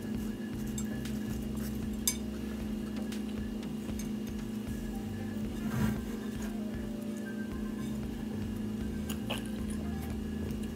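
A person biting into and chewing a soft buttered yeast dinner roll, with a few small clicks and a louder bite just before six seconds in, over a steady low hum.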